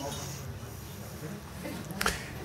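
Quiet restaurant background between remarks: a low steady hum with faint, indistinct murmur of diners' voices.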